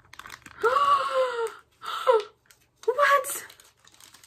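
A young woman's excited, high-pitched wordless exclamations: three drawn-out vocal sounds, the first and longest about half a second in. Faint small clicks of the plastic capsule and its wrapping are heard between them.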